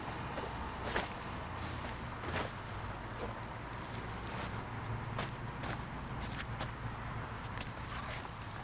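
Faint scattered scuffs and rustles of a pitching-mound cover being folded and dragged on the mound dirt, with a few footsteps, over a steady low background hum.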